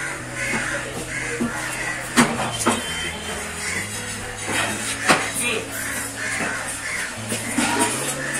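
Background music with a steady bass, over which a knife chops through fish onto a wooden block: two sharp knocks about two seconds in and another about five seconds in.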